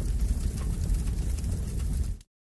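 A steady low rumbling noise with a faint hiss over it: the transition sound effect played under the channel's logo card between two comments.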